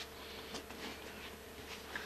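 Faint steady buzzing hum, one even tone, over quiet room noise with a few soft ticks.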